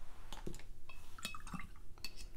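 A few small clicks and taps of a bottle of white acrylic ink being handled and set down on a tabletop, one with a brief light clink.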